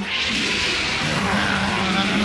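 Animated film soundtrack: tense orchestral music with a held low note about halfway through, under a loud, steady rushing noise.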